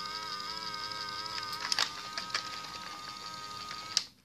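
A toy robot's small built-in speaker playing an electronic tune: held tones that waver slightly in pitch, with a few light clicks around the middle. The owner says the robot's sound is getting distorted.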